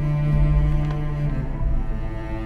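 Background score of long held low notes, likely low strings; the lowest note drops out and the line shifts about two-thirds of the way through.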